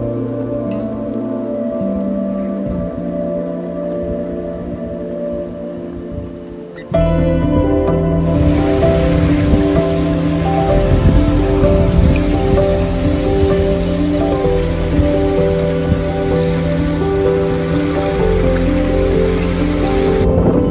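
Soft ambient music with long sustained notes. About eight seconds in, pond water washing over broken shore ice joins it, with a tinkling, pattering sound of ice.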